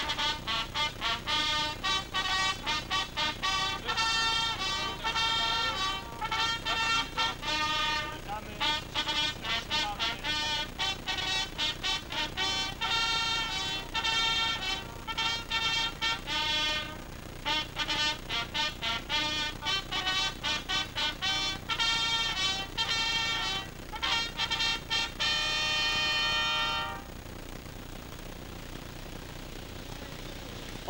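Brass band playing a brisk tune in quick runs of short notes. It stops abruptly about three seconds before the end.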